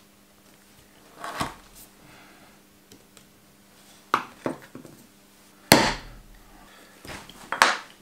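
A leather strap being cut to length on a cutting board. Several short, sharp knocks and clatters come from tools on the workbench, the loudest about two-thirds of the way through.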